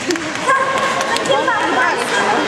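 Sea lion barking.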